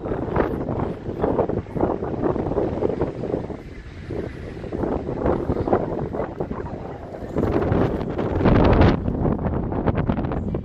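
Wind gusting across the microphone, a rough, uneven rumble that rises and falls, easing a few seconds in and loudest near the end.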